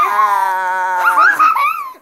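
A person howling in play: one long, drawn-out wail that wavers in pitch, breaking into shorter rising-and-falling cries about a second in.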